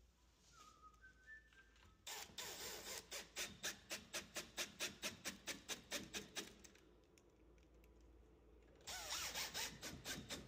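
Milwaukee Fuel brushless cordless drill-driver driving screws through a lock faceplate into the wooden edge of a door: a fast, even pulsing of about five beats a second for around four and a half seconds, then a second shorter run of the driver near the end, its whine rising as it starts.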